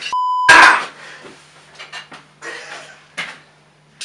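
A short censor bleep, a single steady beep tone, followed at once by a loud, sudden burst of sound about half a second in. For the rest, only faint scattered noises over a low steady hum.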